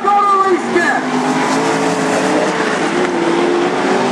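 Wingless sprint car engines running on the dirt track, a steady drone whose pitch wavers slowly. A voice is heard in the first second.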